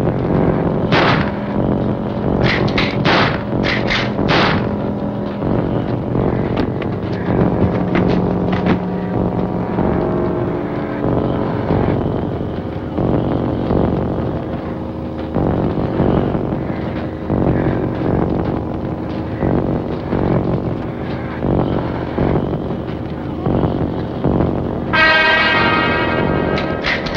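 Old horror-film soundtrack with no dialogue: loud, dense dramatic music with held tones, broken by repeated sharp hits, several in quick succession in the first few seconds.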